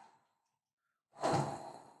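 A woman blowing a breathy whoosh through her mouth to imitate the wind. It starts about a second in, loudest at the onset, then fades away.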